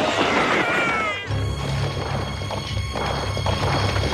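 Cartoon sound effect of rocks crashing down in a dust cloud, with a few downward-sliding tones over it. About a second in it gives way to low, sustained background music.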